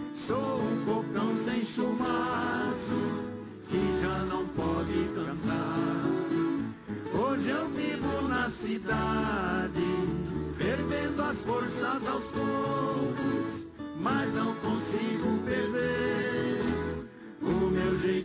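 A viola caipira orchestra playing live: a large ensemble of ten-string Brazilian folk guitars (violas caipiras) plucked and strummed together.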